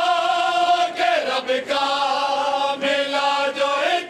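Group of men singing a Punjabi mourning lament (van) in unison, drawing out long held notes; the melody steps down about a second in and climbs again near the end.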